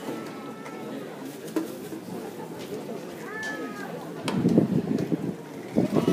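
Spectators' voices and chatter, low at first and louder from about four seconds in, while the drum and bugle corps stands silent in formation.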